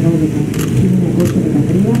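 A man's voice announcing over an outdoor loudspeaker, reading out a dedication. A few sharp ticks come about two-thirds of a second apart.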